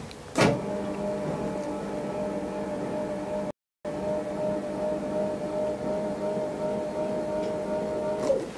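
Electric lift motor of a motorised ophthalmic chair running to adjust its position: a steady whine with an even pitch. It starts with a click about half a second in and is cut briefly by a dropout near the middle.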